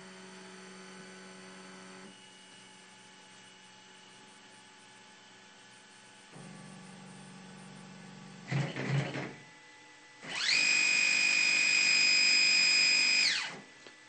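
Stepper motors driven by a four-axis microstepping driver. Faint steady hums at first, then a short rough burst, and about ten seconds in a loud high-pitched whine that rises in pitch as the motors ramp up to about 3,000 RPM (160,000 microsteps per second), holds for about three seconds, then falls as they ramp down.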